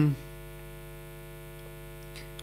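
Steady electrical hum with many evenly spaced overtones, a faint buzz running unchanged under a pause in the speech; the end of a spoken word trails off right at the start.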